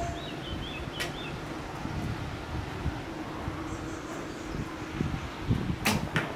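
Steady outdoor background hiss with a brief, wavering high chirp near the start and two sharp clicks, one about a second in and one near the end.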